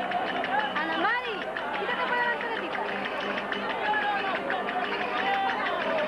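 Verdiales folk music from a panda: a voice singing with gliding, swooping pitch over a quick steady clatter of the band's percussion, with crowd chatter mixed in.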